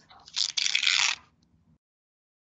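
A brief dry rustling scrape, like a hand sliding over sheets of paper, lasting about a second; then the audio cuts out to dead silence.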